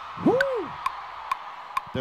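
A drummer's metronome click track ticking steadily a little over twice a second after the band has stopped, every fourth click pitched higher to mark the downbeat. About half a second in, a short voice sound glides up and falls back down.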